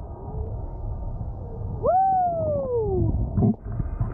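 Wind and water rushing over the camera mic, and about two seconds in a long whooping yell from a rider that jumps up in pitch and then slides slowly down for about a second.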